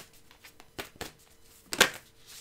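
Deck of Moonology oracle cards being shuffled by hand: several brief, irregular card-on-card snaps, the loudest near the end.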